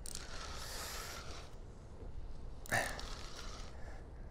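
Faint outdoor noise of wind and water around a sea kayak, with one short hissing burst a little under three seconds in, while a rod is bent into a hooked fish.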